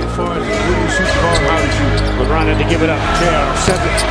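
A basketball bouncing on a hardwood court in live game audio, with background music and a steady bass line under it.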